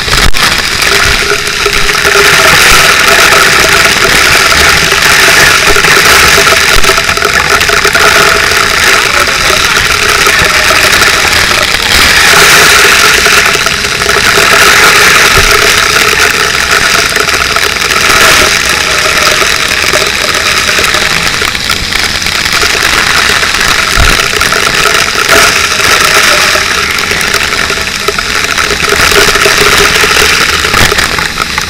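A fire hose spraying water with a loud, steady hiss, over a fire pump engine running steadily.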